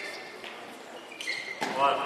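Sports shoes squeaking in short high squeals on a sports-hall floor and the thuds of a handball as players move and pass it.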